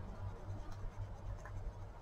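Inktense watercolour pencil shading on coloring-book paper: a faint, soft scratching of the lead over the page, with a low steady hum underneath.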